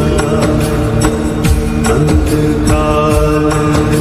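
Hindu devotional music for Hanuman, with a sustained drone of held tones under a steady percussion beat.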